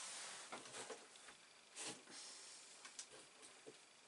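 Near silence: faint room hiss with a few soft, brief noises, the clearest about two seconds in.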